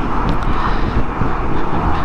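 Steady wind rush and road noise from a Honda GoldWing GL1500 touring motorcycle cruising at highway speed.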